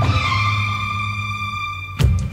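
Karaoke backing track of a Hindi film song: one held chord over a steady bass note, slowly fading, with no beat.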